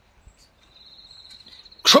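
A cricket trilling faintly: a high, evenly pulsing chirp at one steady pitch, starting a little over half a second in and running until a man's voice cuts in loudly near the end.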